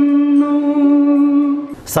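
A man singing into a microphone, holding one long steady note that stops abruptly near the end.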